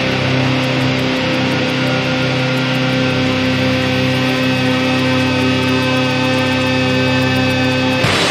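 Instrumental drone doom metal: a fuzz-distorted electric guitar in drop-C holding one chord that rings on steadily with no new notes, until a fresh chord is struck at the very end.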